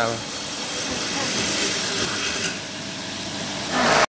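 Workshop machinery running with a steady noise and a thin, high steady whine, getting quieter about two and a half seconds in.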